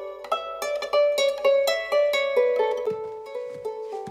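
A harp plucked note by note in a slow, gently falling melody, about three notes a second, each note ringing on under the next.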